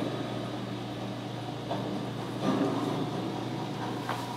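Steady low electrical hum with an even hiss, typical of aquarium equipment running, with a few faint soft swells partway through.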